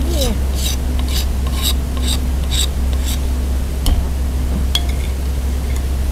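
A metal spoon scraping minced garlic and chilli off a wooden cutting board into a bowl of fish sauce, in quick strokes about four a second for the first three seconds. Then a couple of light clinks of the spoon.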